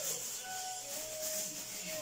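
Light rubbing and handling noise of a plastic lipstick tube turned in the fingers, over a steady hiss and faint sustained tones of quiet background music.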